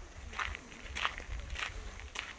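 Footsteps of a person walking at a steady pace on a sandy paved path: three crunching steps in two seconds, over a low rumble.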